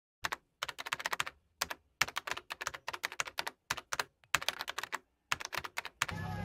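Computer keyboard typing sound effect: quick runs of key clicks in about seven bursts, with dead silence between them.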